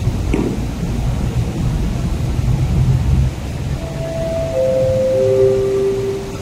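MTR East Rail Line R-train approaching the platform: a heavy low rumble, then in the last two seconds a series of steady whines stepping down in pitch from its electric traction drive as it slows.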